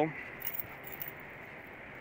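A set of keys jingling lightly in a hand, with a few soft clinks about half a second in.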